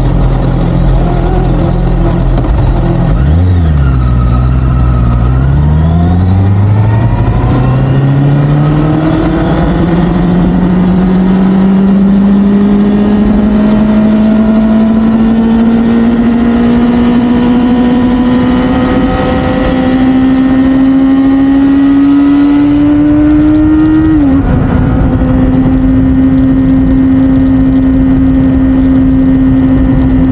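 Honda CBR650R inline-four engine pulling away, its note dipping and rising in the first few seconds and then climbing slowly and steadily. Near the end it drops sharply once at a gear change and settles to a steady cruising note, with wind hiss over it.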